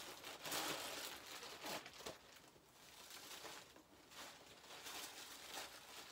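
Faint, irregular crinkling and rustling of packaging as a hoodie is unwrapped by hand, a little louder in the first two seconds and again near the end.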